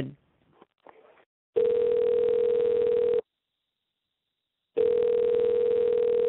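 Telephone ringback tone over a phone line: a steady low tone that rings twice, each ring about a second and a half long with a gap of about the same length, as the call is being connected.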